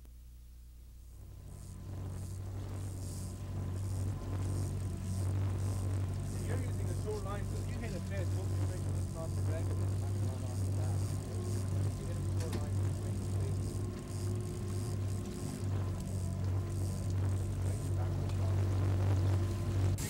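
Houseboat engine running steadily at trolling speed, a low even hum that comes in about a second in.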